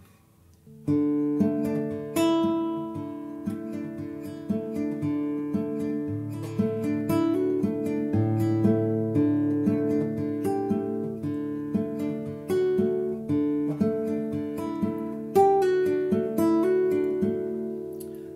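Nylon-string classical guitar fingerpicked in a steady clawhammer pattern built on a D chord, with changes through D added second and D sus4 and hammer-ons and pull-offs. The thumb keeps alternating bass notes under picked notes on the treble strings. It starts about a second in, and the last chord rings away near the end.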